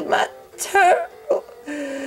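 A voice making a few short vocal sounds over background music, with a held note near the end.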